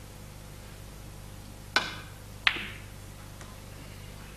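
A snooker cue tip strikes the cue ball with a sharp click. About 0.7 seconds later a second, louder click follows as the ball strikes another ball.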